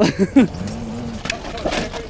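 People laughing and exclaiming, with two sharp knocks, one early on and one just past the middle.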